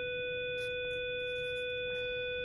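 A steady, mid-pitched electronic tone, held perfectly level with no wavering, like a test tone or a long beep.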